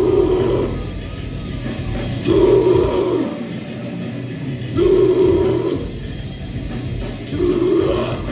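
Live heavy metal band playing: distorted guitar, bass and drums under short growled vocal phrases that come about every two and a half seconds.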